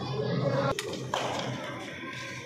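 People talking indistinctly, with one sharp tap a little before halfway.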